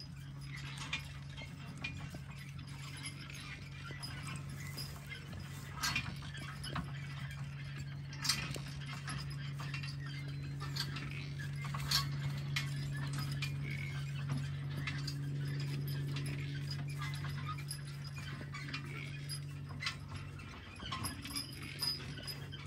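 Percheron draft horse team walking in harness pulling a wooden-wheeled wagon: scattered clinks and rattles of harness and trace chains and the wagon, with hoof falls. A steady low hum runs underneath and cuts out near the end.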